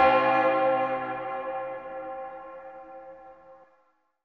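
A single bell-like tone, struck just before, rings on with several overtones and fades steadily to nothing over about three and a half seconds, closing the song's music.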